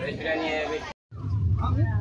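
A child's voice calling out in high, gliding cries over the low rumble of a moving train coach. The sound cuts out completely for a moment about halfway through, then resumes with the rumble louder.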